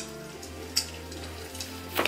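Quiet background music over a steady low hum, with one faint click a little before halfway.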